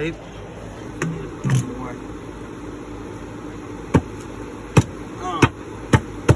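A metal bucket being worked onto a go-kart tire as a makeshift drift sleeve: sharp knocks, a couple early on and then a run of them about every half second to a second in the second half, over a steady hum.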